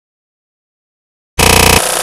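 Dead silence, then about a second and a half in a sudden, very loud, harsh burst lasting about half a second: a balloon bursting, played as a distorted, over-amplified sound effect.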